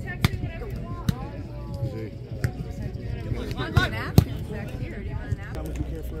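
Volleyball being struck during a rally: sharp smacks of hands and arms on the ball, about five in six seconds, the loudest a little after four seconds in. Voices of players and onlookers run underneath.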